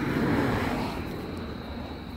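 A passing vehicle's rushing noise, loudest about half a second in, then fading away.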